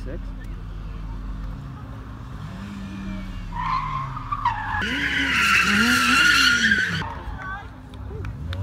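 Toyota AE86 Corolla drifting: its engine revs rise and fall, and from about three and a half seconds in a tyre squeal sets in, growing to the loudest sound before cutting off about a second before the end.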